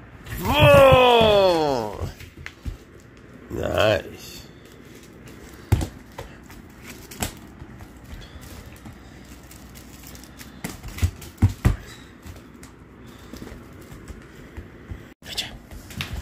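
A long vocal call falls steadily in pitch, starting about half a second in, and a shorter call comes near four seconds. After that there are scattered light knocks and taps.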